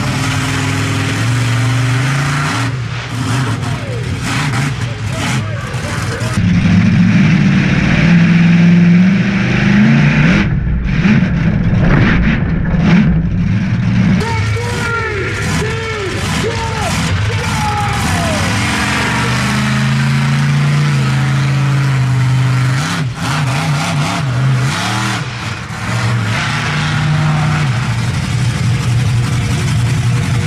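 Monster truck engines running and revving, the pitch stepping up and falling back again and again as the trucks drive the arena, louder for a stretch about a quarter to halfway through.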